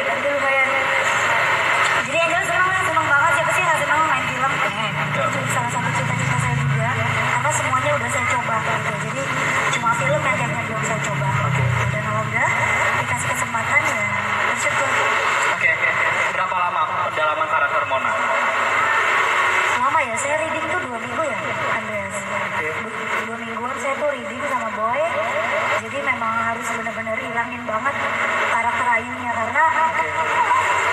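Speech: a woman talking into a handheld microphone through a PA, heard as a phone-recorded live stream with other voices underneath.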